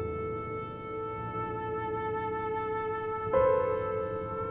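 Silver concert flute playing a long held note, then stepping up to a louder, higher note near the end.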